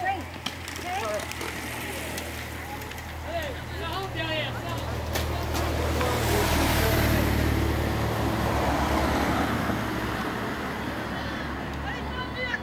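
A car passing close by, its engine and tyre noise swelling to its loudest about halfway through and easing off toward the end, with scattered voices of onlookers.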